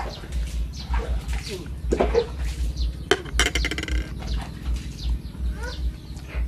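Birds chirping in the surroundings, short falling calls scattered through, with a rapid trill about three seconds in, over a low irregular rumble.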